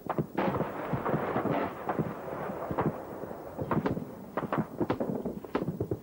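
Battlefield small-arms gunfire: a dense run of overlapping shots in the first two seconds, then single reports and short strings of shots at irregular intervals.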